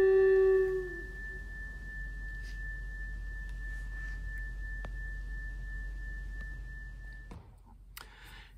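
A pipe organ's final held note of a hymn, ending about a second in; a single thin, high, steady tone keeps sounding for about six seconds more, then cuts off suddenly.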